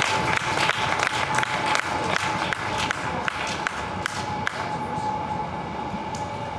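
A small crowd applauding, heard as scattered, irregular individual claps.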